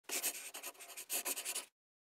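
Short scratchy sound effect of an intro logo sting: a quick run of rapid scrapes in two spells, stopping abruptly before two seconds.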